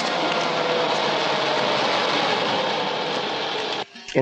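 A train passing close by: a loud, steady rumble and rattle that cuts off suddenly just before the end.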